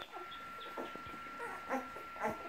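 Young kelpie puppies squeaking and whimpering in short, high little calls as the litter nurses from their mother.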